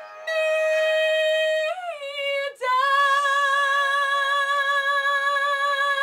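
A young woman belting the song's final held notes: one long sustained note, a glide down and a brief break for breath about two and a half seconds in, then a second long note held with vibrato.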